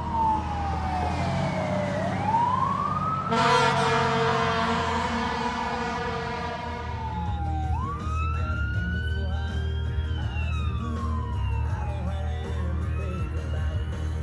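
Fire engine siren wailing, its pitch sweeping slowly up and down, with a short loud horn blast about three seconds in. Heard from inside a car with a steady low engine hum underneath; the siren is fainter in the second half.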